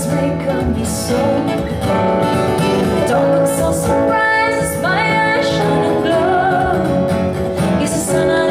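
A woman singing into a microphone over instrumental accompaniment, her voice gliding between notes.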